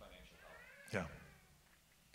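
A faint vocal sound with sliding pitch, ending about a second in with a short, sharply falling cry.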